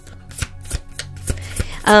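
Tarot cards being handled and shuffled: a handful of sharp, irregular clicks and snaps.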